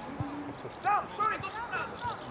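Shouting voices on a football pitch, with a single low thump a fraction of a second in.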